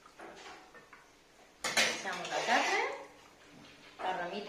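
A metal skimmer clinking against a stainless steel stockpot and a clay cazuela as boiled rabbit and chicken pieces are lifted out of the broth, with a sharp clack about one and a half seconds in.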